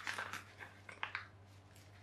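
Faint crinkling and a few light clicks from a padded plastic mailing bag being handled, mostly in the first second.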